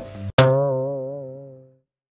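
A sharp click and then a cartoon-style twang sound effect: a pitched tone whose pitch wobbles up and down as it fades out over about a second and a half.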